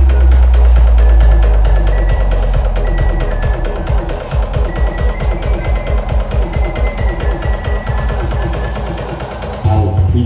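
Loud electronic dance music from a carnival sound system, heavy in bass. About three seconds in the deep bass drops away, leaving a fast pulsing beat. The heavy bass comes back suddenly near the end.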